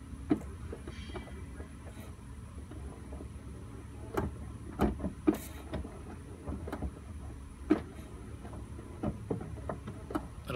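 A few sharp knocks and clicks, spread unevenly, over a steady low hum.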